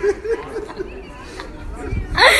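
Several people chattering.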